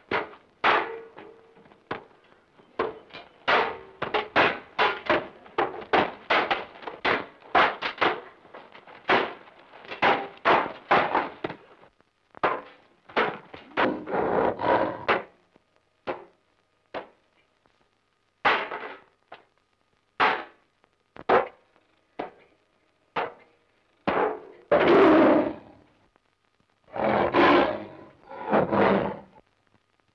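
Film fight sound effects of swords clashing on swords and shields: a quick run of sharp clangs and knocks, several a second. About twelve seconds in they thin out into fewer, longer noisy bursts.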